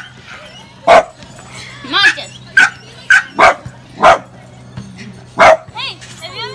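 A dog barking repeatedly, about seven loud, separate barks at irregular intervals.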